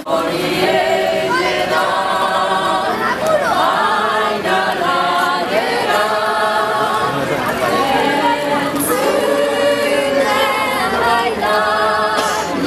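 Women's vocal group singing a cappella in close harmony, holding long notes in a Basque song.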